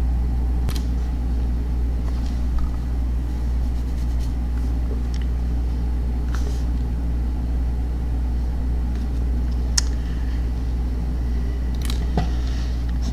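Steady low hum with no change in pitch, and a few faint clicks over it.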